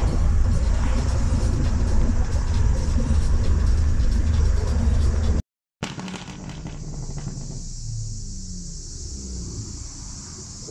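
Loud, steady low rumble of wind and road noise from a car on the move, cutting off abruptly at a cut about halfway through. After it, a car engine idles quietly under a steady hiss.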